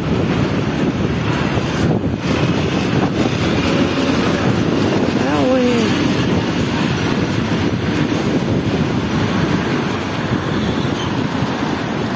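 Loud, steady rumbling noise on the microphone while walking outdoors, with a short voice-like sound about five seconds in.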